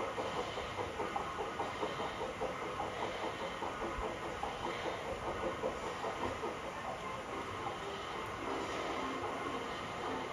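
LGB G-scale model train coaches rolling over the track and a model bridge, the wheels clicking rhythmically over the rail joints a few times a second. The clicking grows less distinct in the second half as the train moves away.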